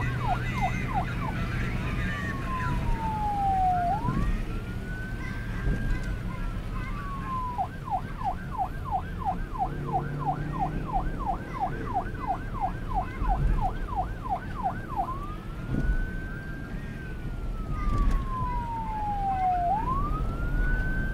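Police siren switching between a fast yelp, about four sweeps a second, and a slow wail that rises and falls over several seconds. The slow wail runs about a second in and again in the last five seconds, with the yelp in between.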